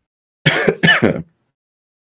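A man clearing his throat once, a short two-part sound about half a second in.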